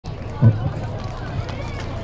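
A voice calls out a short "hai" about half a second in, over a steady low hubbub of people and background noise at an outdoor venue.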